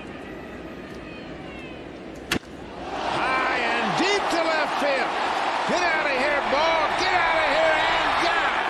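A baseball bat cracks once on a pitched ball about two seconds in, over a low crowd murmur. A stadium crowd then cheers loudly, with many shouts, as the ball carries to the outfield wall for a home run.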